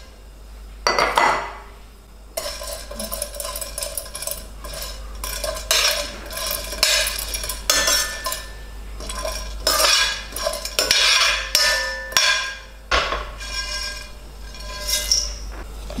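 Whole cloves tipped into a dry stainless steel frying pan, then stirred around with a metal spoon as they toast: irregular scraping and clinking of metal on metal with the dry cloves rattling, from about two seconds in.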